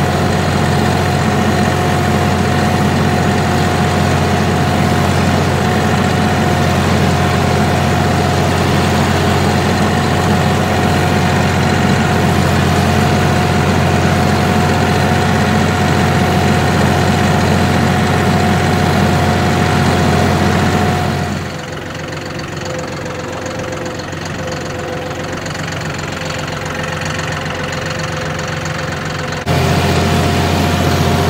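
John Deere 5045E tractor's diesel engine running steadily under load while pulling a moldboard plow, heard from the operator's seat. About two-thirds of the way in, the sound drops quieter and lower for several seconds, then returns at full level near the end.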